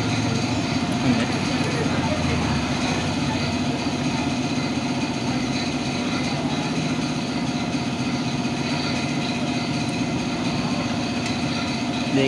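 A machine running steadily in the background, an even mechanical drone that does not change.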